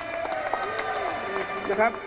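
Crowd of many voices shouting and cheering in response, with some scattered clapping.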